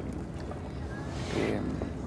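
Steady low outdoor rumble from wind and background noise at the microphone, with a short breath-like hiss from the man about halfway through a pause in his speech.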